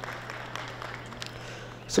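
Faint, even background noise of an indoor sports hall with spectators, over a steady low electrical hum, with a few light ticks.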